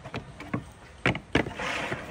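Large jigsaw puzzle pieces knocking against the boards and tabletops as they are grabbed and pressed into place, four sharp knocks, then a short scraping slide near the end.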